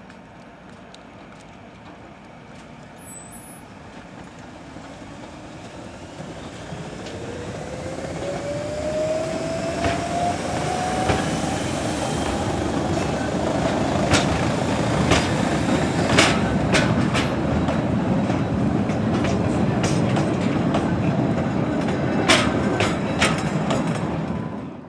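Wengernalpbahn electric rack-railway train passing close by, growing louder over the first several seconds with a whine that rises in pitch. Once it is alongside there is a steady rumble with a run of sharp clicks and knocks from the wheels and track.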